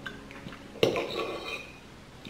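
A metal fork clinks once against a ceramic plate a little under a second in, ringing briefly, as a slice of mango is speared from the plate.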